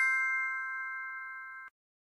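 The ringing tail of a chime: several bell-like tones sounding together, fading slowly, then cutting off abruptly near the end.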